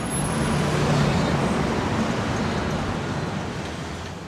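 City street traffic noise, with a motor vehicle passing close by. It swells to its loudest about a second in, then slowly fades.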